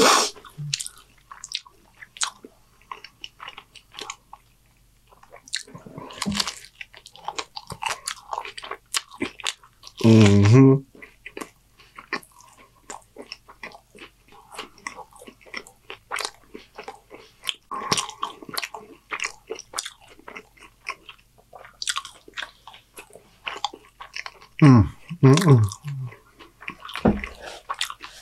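Close-miked chewing of a mouthful of taco: wet mouth clicks and smacks all through. There is a loud hummed "mm" about ten seconds in and a few more short hums near the end.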